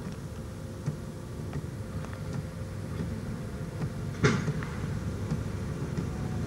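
A 150-tonne mining haul truck's diesel engine running at low revs, a steady low rumble, with a brief louder sound about four seconds in.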